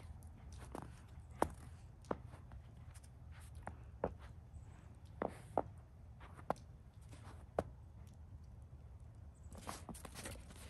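Scattered footsteps in snow: short, separate steps at irregular intervals, over a low steady rumble.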